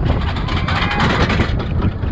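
Hybrid roller coaster train running along its track, heard from onboard: a rapid rattling clatter over a steady low rumble. It gets louder and harsher for about a second near the middle.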